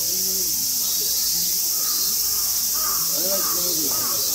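Steady high-pitched drone of a summer insect chorus, with a crow cawing several times in the second half.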